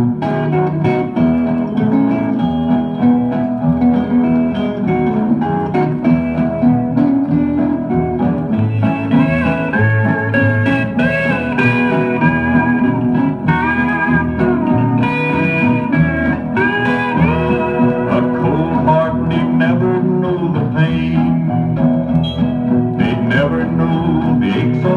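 A country record playing on a turntable, in an instrumental break without singing: guitars over bass, with a steel guitar sliding between notes through the middle of the break.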